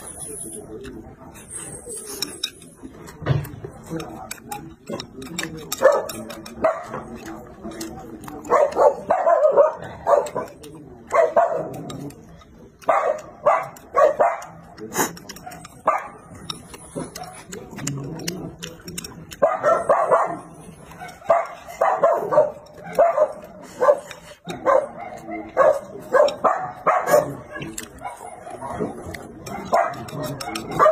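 A dog barking over and over, in runs of barks with short pauses between.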